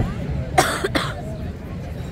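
A person coughing twice close to the microphone, about half a second and one second in, over background voices.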